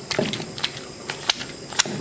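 Wooden pestle grinding garden eggs and scotch bonnet peppers in an earthenware grinding bowl (asanka), with about four sharp knocks as it strikes the bowl.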